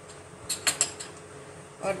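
A small glass bowl being handled and set down on a kitchen counter: three quick light clinks about half a second in.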